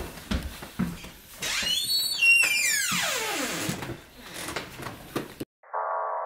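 A door hinge creaking as the door swings: one long creak that rises in pitch and then slides down, with knocks and handling noises before and after. Near the end the sound cuts off abruptly and a synth music bed begins.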